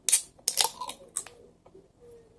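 Ring-pull tab on a drink can being pried up with a fingertip: several sharp clicks and scrapes of thin metal, the loudest right at the start, the rest over the next second.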